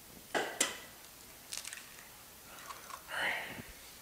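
Eggs being cracked on the rim of a stainless steel mixing bowl and the shells pulled apart: two sharp cracks in the first second, then a few smaller clicks and crunches about a second later.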